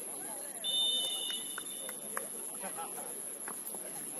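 A referee's whistle blown once, a single steady high tone held for just over a second starting about half a second in, over players' voices calling on the pitch.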